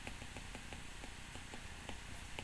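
Faint stylus ticks on a tablet screen as letters are handwritten: a quick run of light ticks, about six a second, over low room hiss.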